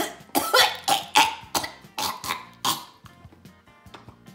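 A person coughing, about eight short coughs in a row over soft background music, stopping about three seconds in.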